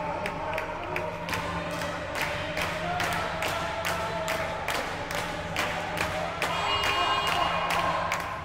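Spectators clapping in a steady fast rhythm, with cheering or chanting voices over it, echoing in a sports hall.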